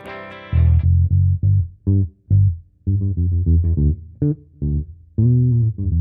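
Univox Lectra violin bass played through an Ampeg bass amp and picked in short, separated low notes with a few brief pauses, close-miked at the speaker cabinet with an Electro-Voice RE20 dynamic microphone.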